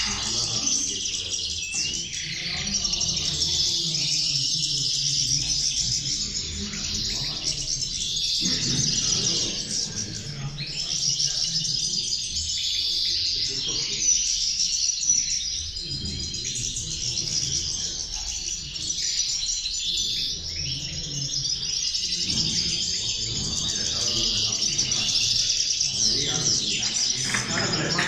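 Caged European goldfinches singing, a dense, unbroken stream of high twittering song that runs on with overlapping phrases.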